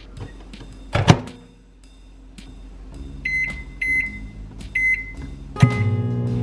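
Microwave oven door shut with a sharp knock about a second in, then three short beeps from its keypad as it is set and started, and the oven begins running with a low steady hum. Acoustic guitar music comes in near the end.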